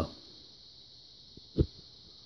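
Pulsed electrolysis cell circuit running with a faint, steady high-pitched whine, and one short low thump about one and a half seconds in.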